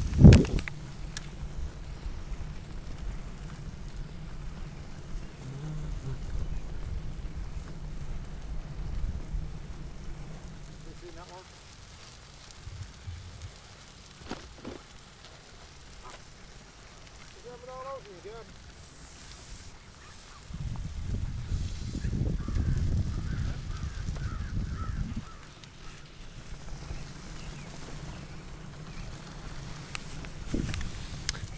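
Canada geese honking, a few scattered calls through the middle, over a steady low rumble of wind on the microphone and riding noise that swells for a few seconds near the end. A sharp bump right at the start is the loudest moment.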